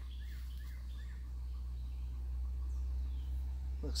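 Outdoor ambience: a steady low rumble with a few faint, short bird chirps in the first second.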